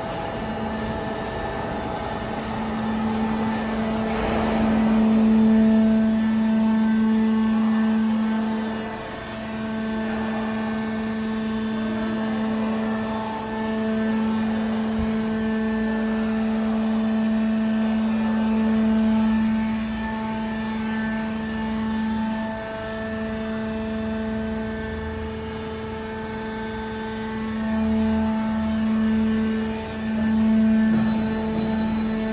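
C/Z purlin roll forming machine running: a steady mechanical hum with a strong low tone, its level swelling and easing. There is a brief noisy rush about four seconds in.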